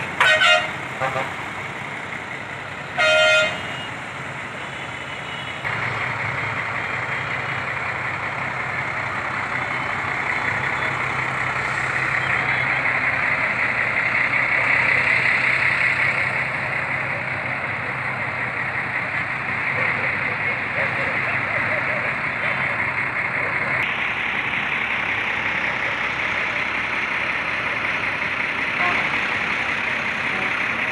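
Two short vehicle horn blasts about three seconds apart, then a bus engine idling steadily with a low hum.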